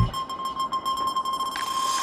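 A break in the background music leaves one steady, high, beep-like tone held over faint hiss.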